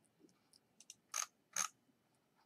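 Faint ticks, then two sharp clicks a little under half a second apart, from a computer's keyboard and mouse being worked.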